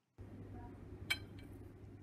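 Quiet room tone with one light metallic clink about a second in and two fainter ticks after it: a magnet being handled at the mouth of a metal pipe just before it is dropped.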